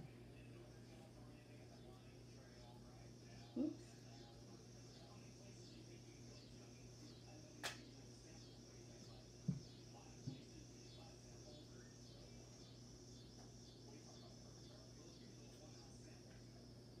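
Near silence: a steady low room hum, with a few soft thumps and one sharp click as an extruded clay coil is handled and pressed into a bowl form.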